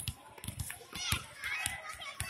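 A basketball being dribbled on a concrete court: several irregular bounces, under the chatter and calls of a group of children.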